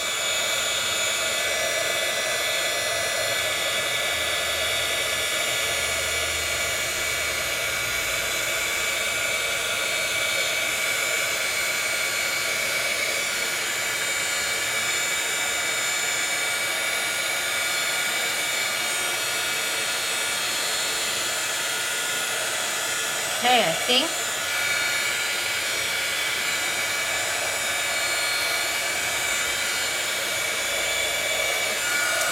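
Craft heat tool running steadily, blowing hot air over crackle paste on paper to dry and crack it: an even whir with a faint steady high whine.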